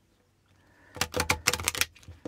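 A deck of thick laminated oracle cards being shuffled by hand, the stacks pushed into each other: a quick run of about ten crisp clicks about a second in, lasting just under a second.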